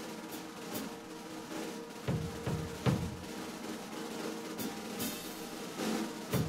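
Live band playing an instrumental passage: held sustained notes with a drum kit adding sparse kick-drum hits and cymbal strokes.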